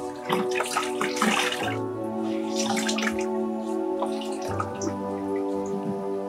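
A cloth being dipped and wrung out in a plastic bucket of water, with water splashing and dripping back into it, most of it in the first two seconds. Soft background music with held chords plays under it.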